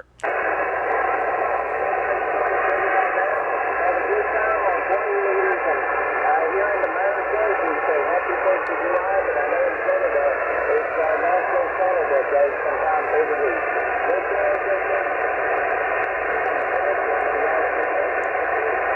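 Single-sideband HF radio receiving a distant station on the 20-metre band: a weak voice deep in hiss and static, in narrow, thin audio with nothing above about 3 kHz, plus a few faint steady whistles. The signal is fading in and out under poor band conditions.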